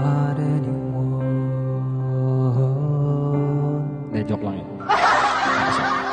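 A male voice sings one long held note on the word "not" through a handheld microphone over a piano backing track, then breaks into laughter about five seconds in.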